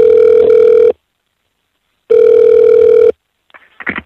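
Telephone ringback tone heard down the line as a call is placed: two steady tones about a second long, a second apart. A click and faint line noise follow near the end as the call is picked up.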